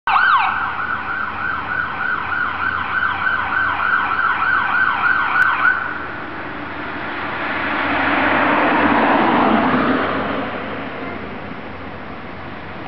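Ambulance electronic siren in rapid yelp, about three rising-and-falling sweeps a second, cutting off about six seconds in. A broad rush of noise then swells and fades over the next few seconds.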